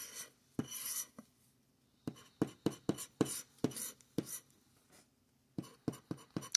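Plastic scratcher tool scraping the coating off a paper scratch-off lottery ticket: a run of short, dry scraping strokes, a couple a second, with a brief pause about a second in.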